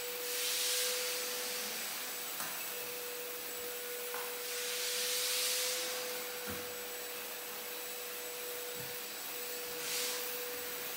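Milwaukee M18 Fuel cordless backpack vacuum running: a steady motor whine over a rush of suction air. The rush swells twice as the wand nozzle is worked over the stair treads, with a few light knocks.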